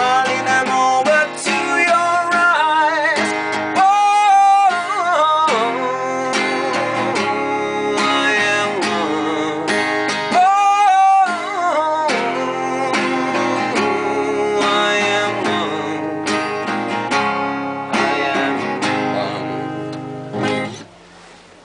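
Strummed acoustic guitar with a man singing over it, holding long wavering notes about four seconds in and again around ten seconds. The playing eases off toward the end as the song closes.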